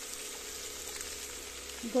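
Cut French beans and spices frying in oil in a kadhai: a steady, even sizzle.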